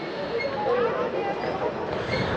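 Steady background rumble with faint distant voices talking.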